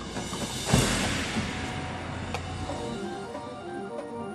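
Drum and bugle corps music: a loud low hit with a crash about a second in that rings out, then quick pitched mallet-percussion notes near the end.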